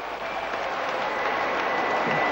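Audience applauding steadily as a table tennis game ends.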